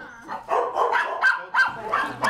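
Shelter dogs barking and yipping in their kennels, a quick run of short barks starting about half a second in.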